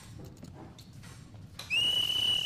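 A referee's whistle blown in one long, steady, shrill blast that starts about a second and a half in, calling a foul.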